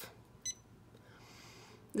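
A single short electronic beep from the Janome Memory Craft 550E's touchscreen as an on-screen button is pressed, about half a second in.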